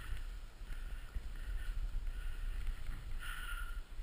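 Skiing or snowboarding through snow in the trees, heard from the rider's action camera: a steady sliding rumble with wind buffeting the microphone and a patchy scraping hiss, briefly louder a bit after three seconds in.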